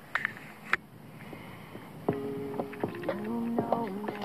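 Water sloshing and dripping around a camera at the surface, with a couple of sharp splash clicks near the start; about two seconds in, background music with held, stepping melodic notes comes in.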